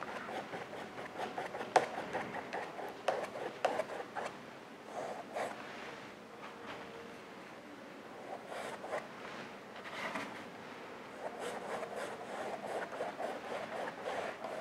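A paintbrush stroking acrylic paint onto stretched canvas in irregular, scratchy crisscross strokes, with a sharp tap about two seconds in.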